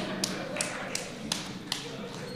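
A run of sharp taps, about three a second and fairly evenly spaced, each with a short echo, over a faint murmur of voices.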